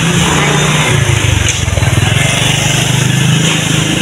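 A motor vehicle's engine running with a low, fast-pulsing drone, strongest in the middle.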